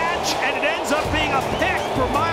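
A game broadcaster's play-by-play voice over background music with a steady low beat.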